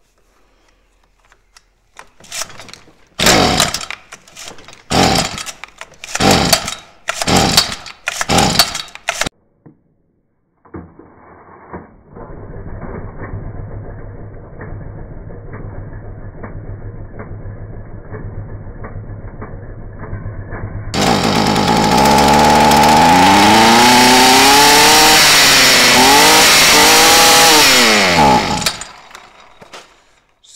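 Stihl FS 45 C string trimmer's two-stroke engine pull-started: several quick pulls of the recoil starter, then it catches and idles steadily. About twenty seconds in it revs much louder, rising and falling with the throttle, then cuts off near the end. This is its first start after sitting about ten years.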